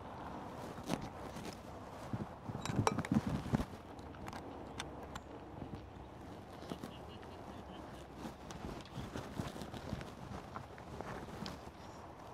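Scattered small clicks, knocks and rubbing of camera gear being handled and fitted together: a DSLR and a flat aluminum bracket being joined under the camera, with a louder cluster of knocks about three seconds in. A faint steady hiss of background noise sits underneath.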